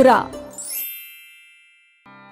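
A bright transition chime: a quick upward shimmer, then high ringing tones that fade out over about a second.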